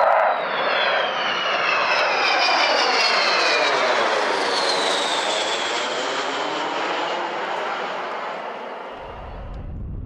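Avro Vulcan bomber's four Bristol Olympus turbojets as the aircraft flies past, a loud jet roar with several whining tones sliding down in pitch as it goes by. The roar fades over the last couple of seconds.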